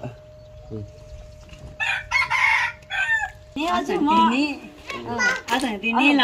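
A rooster crowing once, a harsh call of about a second and a half starting about two seconds in.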